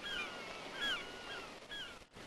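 Gulls calling, several short yelping calls that bend in pitch, one after another.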